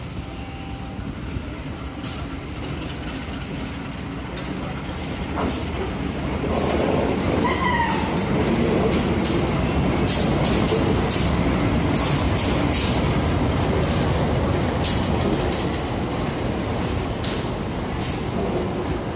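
CC 201 diesel-electric locomotive (GE U18C) hauling a passenger train past, its engine and wheels rumbling, louder from about six seconds in as the locomotive draws level. A brief rising tone is heard about eight seconds in.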